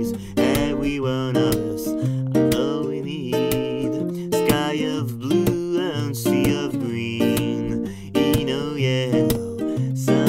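Acoustic guitar strummed in a steady rhythm, with a man's voice singing the melody over it in short phrases.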